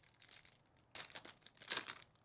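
Foil wrapper of a basketball trading-card pack crinkling as it is opened and the cards are slid out. The crinkling comes in short spells, a small one near the start and louder ones about a second in and near the end.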